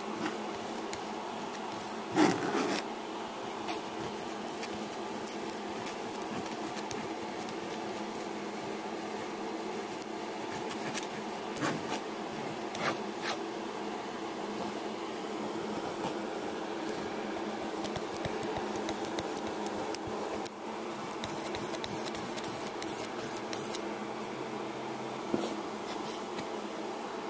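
Small metal palette knife scraping and spreading oil paint across a canvas, with scattered small clicks and one louder knock about two seconds in, over a steady background hum.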